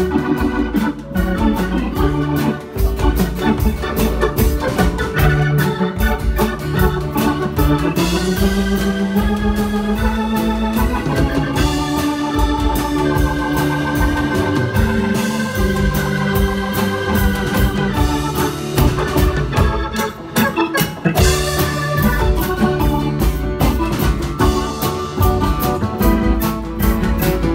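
Live band music led by a Hammond organ playing sustained chords and lines, over strummed acoustic guitar and a steady beat. About eight seconds in, a held note slides slowly upward in pitch.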